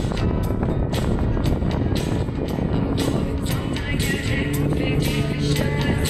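Acoustic guitar strummed in a steady rhythm of a few strokes a second, played live; long held notes come in about halfway through.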